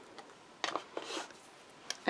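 Faint rustle of paper and card being handled and set down on a craft desk: a few soft, short sounds, mostly about half a second to a second in.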